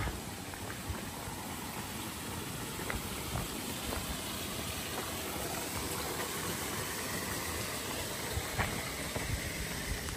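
Small waterfall: a steady rush of falling water.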